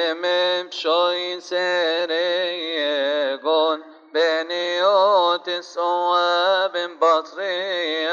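A male voice chanting a Coptic liturgical hymn in long melismatic phrases. The held notes waver with ornaments, with brief pauses between phrases.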